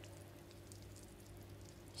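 Faint, steady sizzle of shallow oil frying pişi dough squares in a frying pan, close to near silence.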